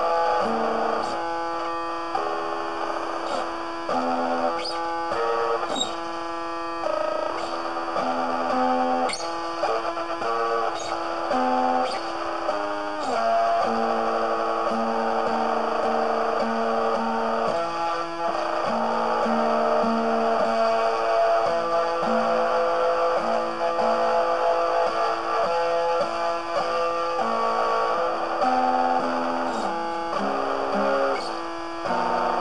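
Guitar music: an instrumental passage of plucked notes changing every second or so over a held low note.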